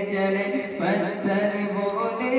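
A man's solo voice reciting a naat, an Urdu devotional poem, chanted unaccompanied into a microphone in long held notes that step from pitch to pitch.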